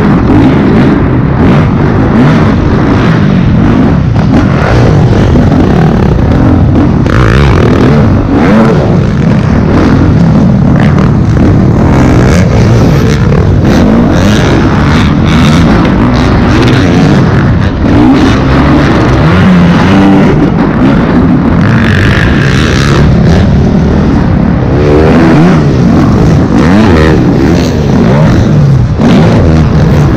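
Dirt bike engine revving up and down under hard throttle as the bike is ridden around a supercross track, heard close up from a camera mounted on the bike.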